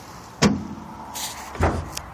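Two dull knocks about a second apart inside the truck cab, the second deeper, with a short rustle between them.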